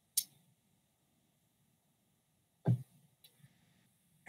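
Near silence on a video-call microphone, broken by a short hiss just after the start, a brief clipped vocal sound about two and a half seconds in, and two faint ticks just after it: small mouth and breath noises between spoken sentences.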